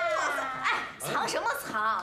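A woman's high-pitched, drawn-out teasing exclamation sliding down in pitch, followed by quick excited vocal exclamations with a wavering, warbling note near the end.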